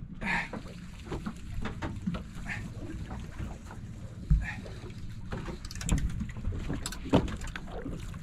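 Open-water boat ambience: a steady low rumble of wind and water against the hull, broken by scattered knocks and clicks, with a sharp knock a little past four seconds in.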